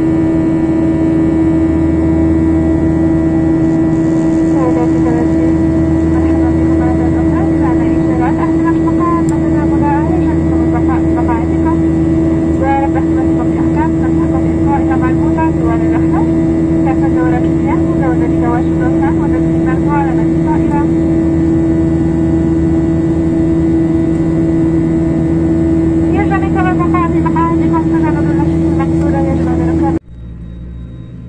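Jet airliner cabin noise heard from a window seat beside the engine in flight: a loud, steady drone with a strong constant hum. Faint voices run under it for much of the time.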